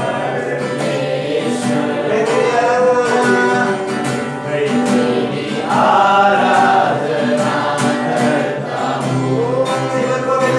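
Men singing a worship song to a strummed acoustic guitar, in a steady rhythm.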